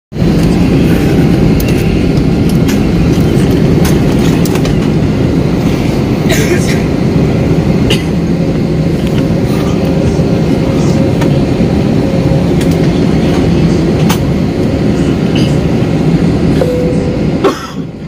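Airliner cabin noise while taxiing: the jet engines run steadily, with loud rumble from the wheels rolling on the pavement and occasional knocks. The noise eases just before the end.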